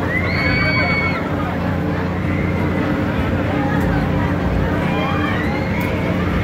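Riders screaming on a spinning, tilting carnival ride over the steady hum of the ride's machinery. One long held scream comes in the first second, and more screams rise near the end.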